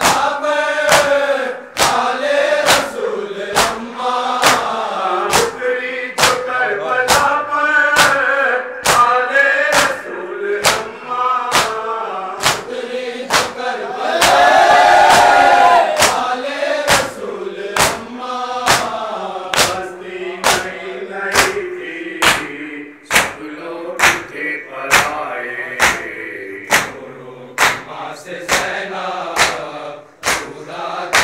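A group of men chanting a nauha lament together while striking their chests in matam, a steady beat of hand-on-chest slaps about every two-thirds of a second. About halfway through the crowd lets out a loud held cry for about two seconds.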